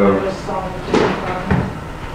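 A man's voice saying a short word, then a sharp knock about a second in and a duller thud half a second later, like something being handled on a table.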